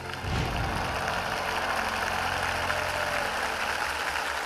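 A steady rushing noise that swells in just after the start, with a brief low rumble at its onset.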